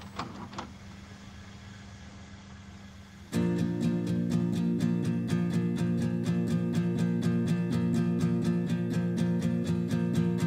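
A low hum with a couple of short clicks. About three seconds in, two acoustic guitars suddenly come in, strumming a fast, even rhythm.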